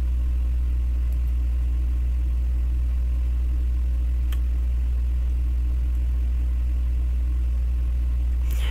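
A steady low hum with no change in pitch or level, and a single faint click about four seconds in.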